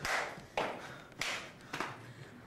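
Rhythmic thumps of someone bouncing on a trampoline, four sharp impacts a little over half a second apart.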